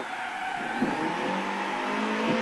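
BMW E30 M3 rally car's four-cylinder engine heard from inside the car through a hairpin, its note steady, then firming and rising slightly in the second half as it drives out.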